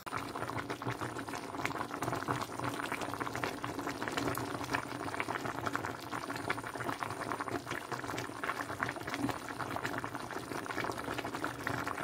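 A pot of sinigang soup boiling, with a steady bubbling and popping throughout; the soup is cooked and ready.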